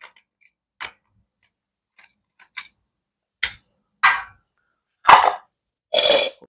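A series of irregular sharp metallic clicks and taps from a metal tool working at a distributor as it is nudged for position, the loudest a knock about five seconds in.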